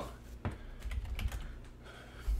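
Computer keyboard keys tapped quietly, a few faint, irregular clicks in the first second or so.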